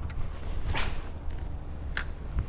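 Wind rumbling on the microphone, with a short swish a little under a second in and a sharp click at the very end.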